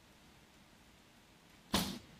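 Faint room noise, broken near the end by one short, sharp noise lasting about a quarter of a second.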